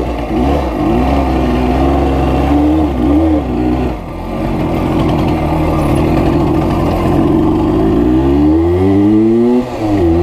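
Zanella RZF 200 motorcycle's engine heard from the saddle, its revs rising and falling for the first few seconds as it pulls away at low speed. The revs then hold steady, and near the end they climb, with one brief sharp drop before climbing again.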